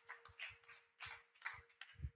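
Faint, irregular hand claps and knocks, a few a second, over a faint steady held tone.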